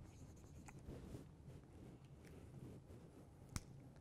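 Near silence: faint room tone with a few soft whiteboard marker strokes at first, then a single sharp click shortly before the end.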